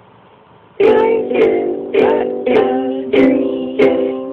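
Ukulele being strummed: after a faint ringing chord, six evenly spaced chord strums start about a second in, a little under two a second, and the last is left ringing.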